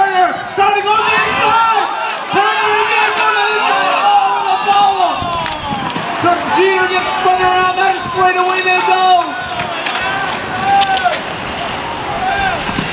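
Electric motors of several radio-controlled touring cars whining as they race, each pitch climbing, holding steady for a second or two, then dropping away as the cars slow into corners.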